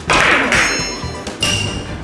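A billiard cue strikes the cue ball on a carom (three-cushion) table, with a sharp knock right at the start and another knock of the balls about a second and a half in.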